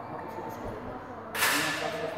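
Voices in a sports hall, with a low thud about half a second in and a sudden sharp, hissing crack about one and a half seconds in that dies away within half a second.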